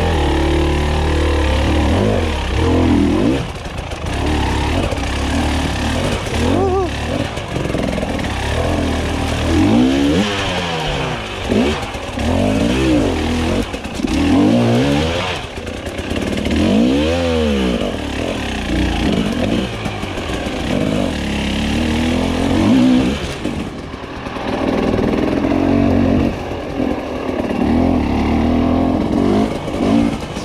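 Husqvarna TE300i two-stroke enduro motorcycle engine being ridden over a rough trail, its pitch rising and falling again and again with the throttle. The engine is running freshly idle-adjusted, which the rider says makes it run a lot happier.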